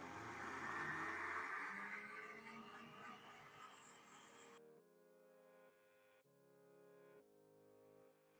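Countertop blender running with water and dish soap inside to clean its jar, fairly faint, loudest about a second in and fading away about four and a half seconds in. Soft background music with sustained tones fills the rest.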